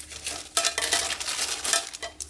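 Scissors snipping open a thin clear plastic bag, then the plastic crinkling as it is pulled apart and handled.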